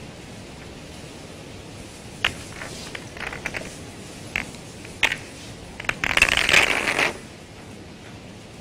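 Snooker balls clicking against one another as the reds are gathered and placed into the triangle by hand: a run of separate sharp clicks, then a denser clatter lasting about a second as the pack is settled.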